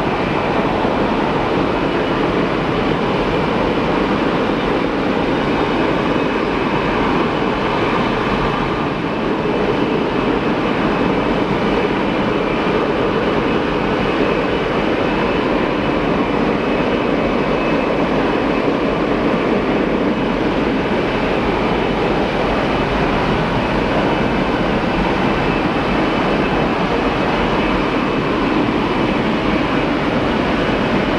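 Pratt & Whitney F117-PW-100 turbofan engines of a C-17 Globemaster III running steadily on a cold-weather start at −20 °C: a loud, even rumble with a faint high whine over it.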